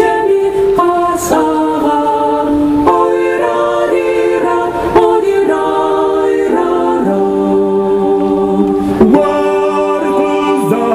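Mixed vocal ensemble of women's and men's voices singing in close harmony through a stage sound system. The chords change about once a second, and a long chord is held near the end.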